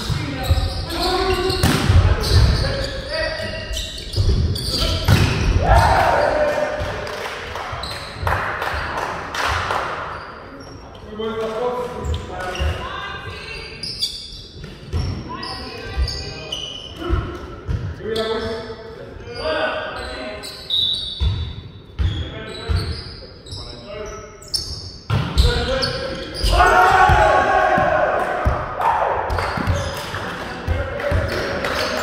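Volleyball players shouting and calling to each other, with the sharp thuds of the ball being hit and bounced on the wooden court, all echoing in a large gymnasium. The voices rise into a louder burst of shouting near the end.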